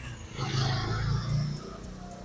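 A motor vehicle passing on the street: its engine sound swells about half a second in and fades away near the end.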